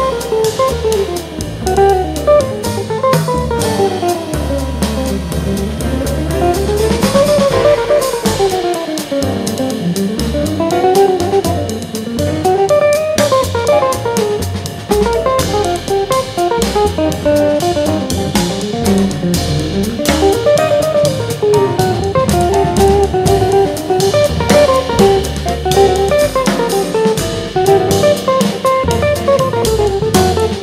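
Live jazz band: a hollow-body archtop electric guitar plays a solo of fast runs that climb and fall, over walking upright double bass and a drum kit keeping time on the cymbals.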